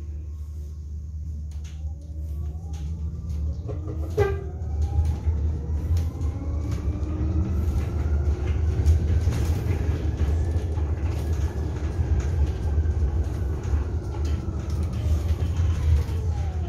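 Electric city bus's traction motor whining from inside the cabin, its pitch rising as the bus gathers speed and falling again near the end as it slows, over a steady low road rumble and light rattles of fittings. A short falling squeal sounds about four seconds in.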